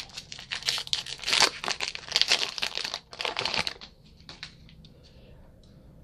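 Baseball card pack wrapper being torn open and crinkled: a dense run of crackles that dies away about four seconds in.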